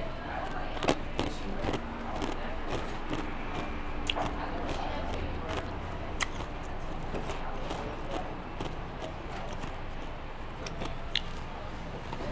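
Restaurant patio ambience: a steady murmur of distant voices with scattered light clicks and knocks.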